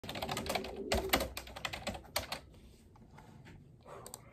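Typing on a computer keyboard: a quick run of keystrokes for about two and a half seconds, then a few scattered key presses.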